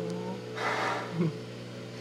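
A breathy exhale from a person about half a second in, then a brief low vocal sound just after a second, over a steady low electrical hum.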